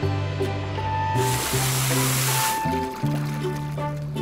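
Cartoon background music with changing low notes throughout. About a second in, a hiss of water spraying from a fire-truck hose nozzle lasts about a second and a half.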